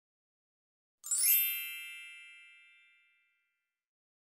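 A single bright bell-like chime, an intro sound effect, struck about a second in and ringing away to nothing over about two seconds.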